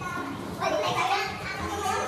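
Several young men's voices talking and calling over one another at once, with no single clear line of speech.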